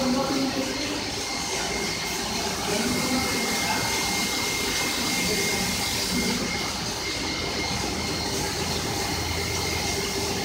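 Goldfist automatic carpet washing machine running: a steady machine noise with water spraying onto the carpet and a thin, continuous high whine.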